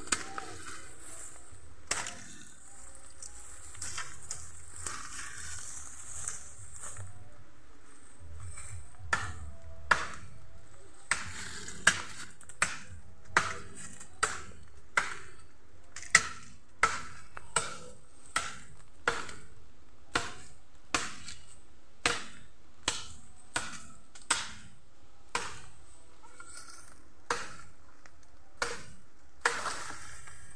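A bamboo culm being chopped with a blade: a few scattered knocks and rustling at first, then from about nine seconds in steady, sharp chops about every three-quarters of a second.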